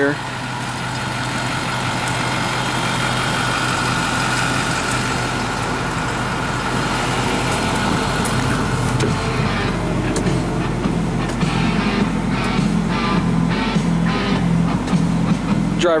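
A bus engine idling steadily, heard from the entry steps and driver's area. A faint high steady tone sounds during the first half.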